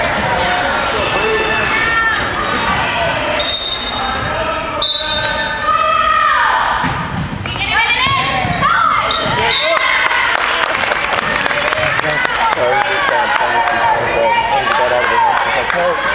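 Volleyball play in an echoing gym: the ball is struck and bounces on the wooden floor again and again, under the steady chatter and calls of spectators and players.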